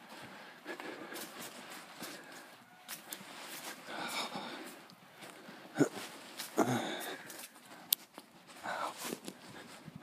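Footsteps on grass and the rustle of a handheld phone camera being carried while walking, with a few sharp clicks in the second half.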